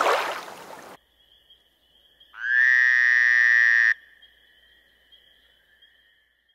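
Nature sound effects: a rushing noise that cuts off about a second in, then a faint steady high tone under one loud pitched animal call lasting about a second and a half, starting and stopping sharply.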